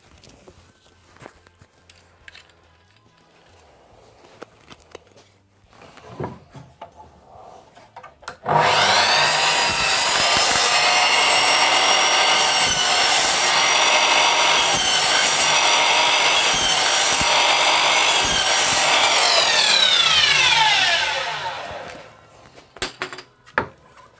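DeWalt sliding mitre saw switched on about eight seconds in, running with a steady whine while its blade cuts a groove into a piece of wood, the cutting noise coming and going as the blade is pushed through in repeated passes. It is then switched off and winds down, falling in pitch. Before it starts there are only faint rustles and clicks.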